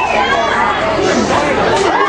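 Several people talking at once close by: overlapping chatter of spectators.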